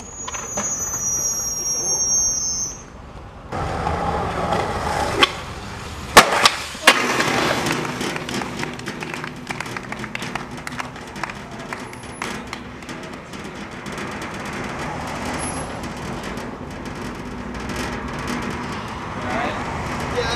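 Skateboard rolling on concrete, then two sharp, loud smacks about six and seven seconds in as the board and skater hit the ground in a slam off a sixteen-stair set. Steady street traffic noise follows.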